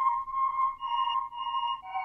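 Pulsing ambient synth tone from a sampled instrument preset in a beat, swelling and fading about twice a second, with a lower note coming in near the end. It is a reverse-effect ambience layer.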